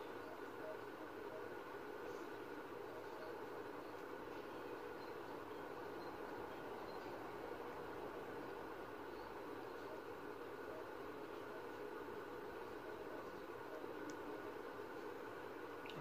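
Steady low room hiss with a faint constant hum, and a few faint small clicks.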